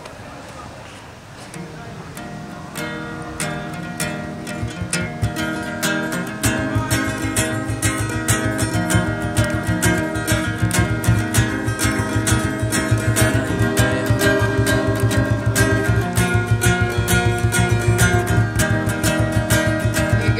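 Acoustic guitar strumming an instrumental introduction, faint at first and growing louder, joined about six seconds in by a hand drum beating a steady low rhythm.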